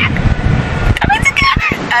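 A young woman laughing and vocalising, her voice breaking up in short bursts.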